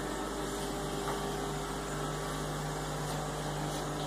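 Steady machine hum with one constant low tone under an even hiss, unchanging throughout.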